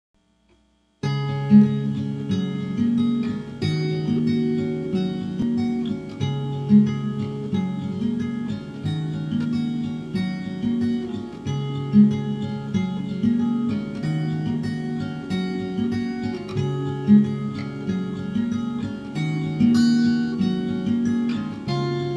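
Acoustic guitar music, plucked and strummed, beginning about a second in after a moment of silence and running on with a repeating pattern of low notes.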